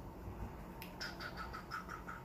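Cockatiel giving a soft, rapid run of short chirps, about seven a second, starting about a second in, just after a faint click.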